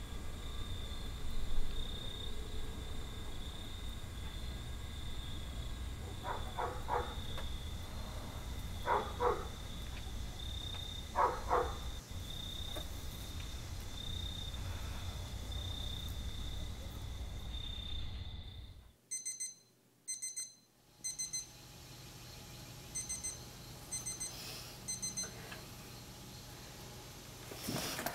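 A steady high-pitched drone over a low rumble, with three short pitched calls about six, nine and eleven seconds in. About nineteen seconds in, the drone and rumble cut off suddenly, leaving a quieter background broken by clusters of short, high electronic beeps.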